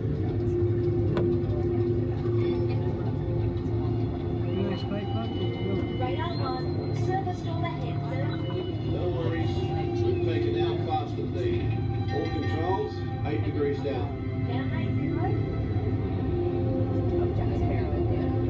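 Inside a submarine ride's cabin: a steady low hum runs throughout, with music and sliding, wavering tones playing through the ride's sound system and voices murmuring.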